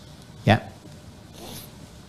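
A man says a single short "ya". About a second later comes a brief, faint, high-pitched rustling hiss.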